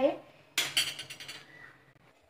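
A metal spoon clinks and clatters against a glass mixing bowl about half a second in, ringing briefly as it fades.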